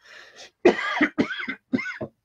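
A man coughing into his hand: a short breath in, then a run of about five quick coughs.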